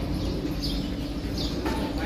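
A small bird chirping repeatedly: short, high, downward-sliding notes roughly every 0.7 seconds, over a steady low hum.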